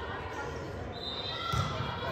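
A volleyball bouncing on the gym's hardwood floor, with a low thud near the end, among spectators' and players' voices echoing in the gym.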